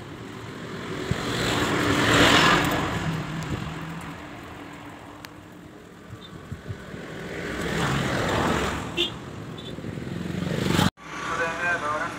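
Road vehicle noise, engine and tyres, in two swells that rise and fade: the louder about two seconds in, the other near eight seconds. It cuts off suddenly near the end, and voices follow.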